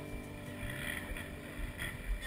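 Background music cuts off at the start, leaving steady outdoor background noise: a soft, even hiss.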